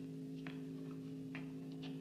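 Steady electrical hum of elevator machinery, with a few faint, sharp ticks at irregular intervals.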